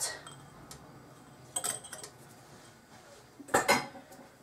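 A measuring spoon clinking against a stainless steel stand-mixer bowl as salt is added: a light ringing clink about halfway through. A brief louder rustle or scrape follows near the end.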